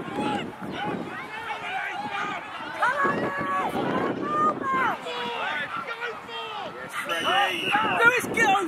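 Several voices of players and touchline spectators shouting and calling out over one another, with a short referee's whistle blast near the end.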